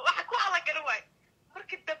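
Speech only: a woman talking, with a short pause about a second in before she goes on.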